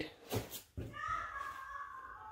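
A couple of soft clicks, then a faint animal call: one long high note that starts just under a second in and falls slightly in pitch.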